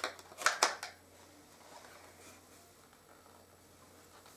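Wooden cut-out letters clicking against each other and the wooden compartment box as one is picked out: three sharp clicks in the first second, then only faint room noise.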